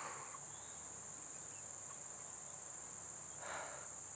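Steady high-pitched insect chorus, an unbroken trill, with two faint rushes of noise, one at the start and one about three and a half seconds in.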